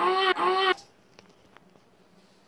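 Two short, loud, nasal goose-like honks in quick succession, over by about three-quarters of a second in. Then near silence with a couple of faint clicks.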